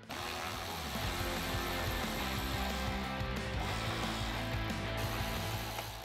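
Background music with a power driver running a T40 Torx bit steadily, backing out the hood-panel bolts.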